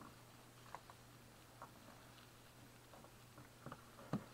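Near silence: room tone with a faint steady low hum and a few faint, short clicks from a USB-C cable being handled and plugged into a power supply.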